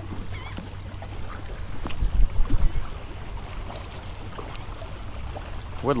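Wind buffeting the microphone over choppy water lapping against jetty rocks, with a louder gust about two seconds in. A short high bird chirp comes about half a second in.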